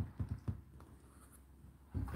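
A few faint clicks and light scratches, then a hand taking hold of a front-loading washing machine's door handle near the end.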